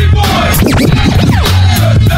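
Hip hop music with a steady beat, broken in the middle by a DJ scratching a record on a turntable, the pitch sweeping rapidly up and down for about a second.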